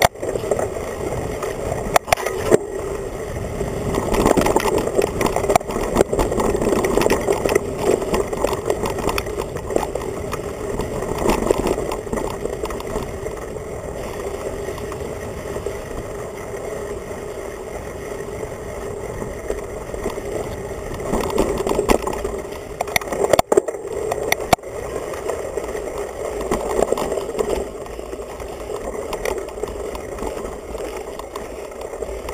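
Mountain bike rolling over a dirt trail, heard through a handlebar-mounted camera that picks up the frame: a steady rattle and rumble of frame and tyres, with a few sharp knocks near the start and again about three-quarters through.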